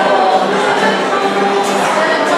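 Small mixed choir of men and women singing together, holding notes.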